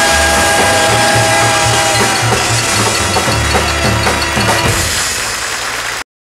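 Jazz big band playing the closing bars of a bebop number: a long held chord that breaks off about two seconds in, over drum-kit fills that keep going and die away near the end.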